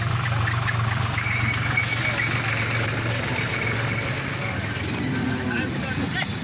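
Steady low hum of an idling truck engine under the overlapping chatter of a market crowd, with a faint high whine for a couple of seconds about a second in.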